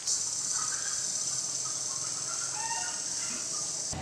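Steady high-pitched chirring of insects, with a few short bird calls partway through.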